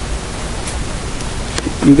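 Steady background hiss with a low rumble beneath it and no other clear sound. A man's voice begins near the end.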